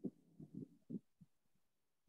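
Near silence broken by three or four faint, short, low thumps in the first second.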